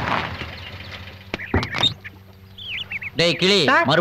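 A voice with a short outburst near the middle and speech again from about three seconds in, with a few faint high chirps in between.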